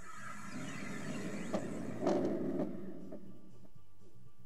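Edited intro sound effect: a whoosh falling in pitch, then a sharp hit about a second and a half in and a louder noisy burst lasting about half a second, over a faint steady background.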